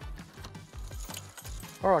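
Keys jangling, with small clicks from the key lock and handle of a caravan door, over soft background music.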